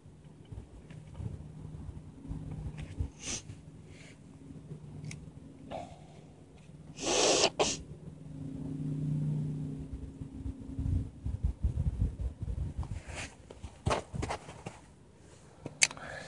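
A man sneezes once, loudly and sharply, about seven seconds in, over a faint steady low hum; scattered clicks and knocks follow in the second half.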